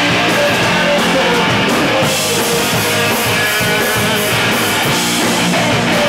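Live rock band playing loud, with electric guitars driven through stack amplifiers; the cymbal-range highs grow brighter about two seconds in.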